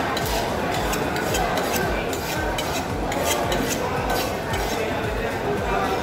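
Busy fish-market ambience: background chatter with repeated short metallic clinks and taps scattered through.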